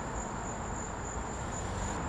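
Outdoor background: a steady high-pitched insect trill over a low, even hum from a lawn mower running in the distance.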